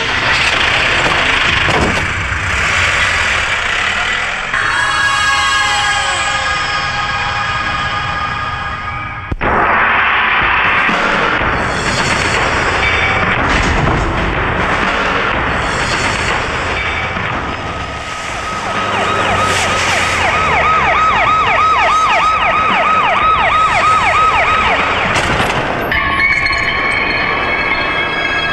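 Police siren wailing with a fast warble, clearest in the second half, over dramatic film background music; the soundtrack cuts abruptly about nine seconds in.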